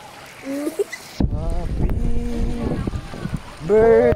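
Pool water sloshing and splashing right against the microphone of a camera held at the surface, starting suddenly about a second in as a low, churning rush with crackles, under people's voices.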